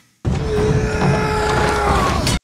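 Television battle-scene soundtrack: music with one held note over a dense low rumble, starting abruptly a moment in after a brief gap.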